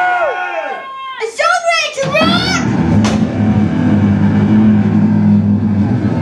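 Long, high yells that glide down in pitch, then from about two seconds in a steady low drone from the band's amplified instruments on stage, held without any beat, with a single sharp click about a second later.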